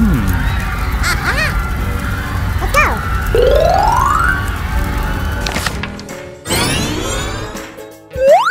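Cartoon sound effects over background music: several short boing-like pitch bends, a rising whistle-like glide about three seconds in, and a swoosh near the end.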